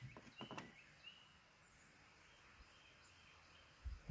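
Near silence: faint outdoor background, with a few soft clicks in the first second.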